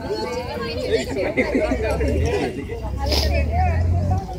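Several voices chattering over one another, with a low rumble coming in about halfway and one brief sharp sound a little after three seconds.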